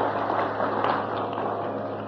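Audience applauding, the clapping swelling about half a second in and dying away near the end, over a faint steady low hum.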